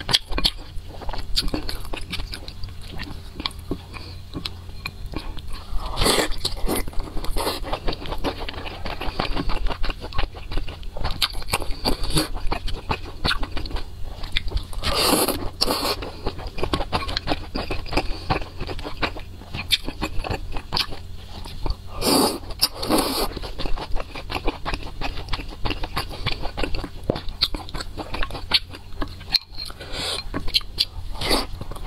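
Close-miked eating of pan-fried dumplings: steady chewing and biting with many small wet clicks, and a few louder, longer mouth sounds about six, fifteen and twenty-two seconds in. Chopsticks scrape now and then against a glass bowl of chili dipping sauce.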